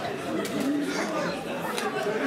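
Chatter of several people talking in a club, with no music playing.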